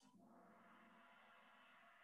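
Very faint gong-like chime from the Kahoot quiz as its countdown runs out, starting at once and ringing on, slowly fading.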